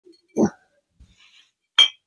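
Old glass bottles clinking against each other as they are handled: a duller knock near the start and a sharper, brighter glass clink near the end.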